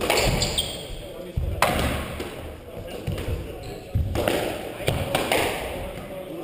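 Squash rally: the ball struck by the rackets and smacking off the court walls in sharp, echoing cracks a second or more apart, with the players' footsteps and shoe squeaks on the wooden floor.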